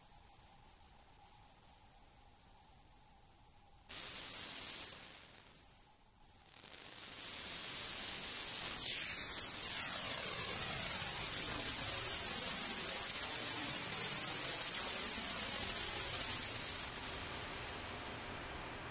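Studiologic Sledge synthesizer (Waldorf engine) playing a noise patch while its knobs are turned: a thin high tone at first, then from about four seconds a loud white-noise hiss that drops out briefly near six seconds. The hiss then carries on with a slow sweeping whoosh that falls and rises in pitch, swelling again near the end.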